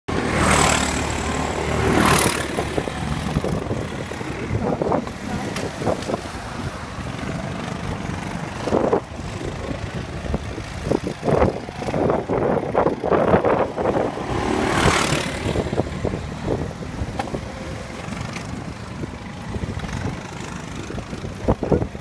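Go-kart engines running as karts lap the track, swelling louder at moments as a kart comes close.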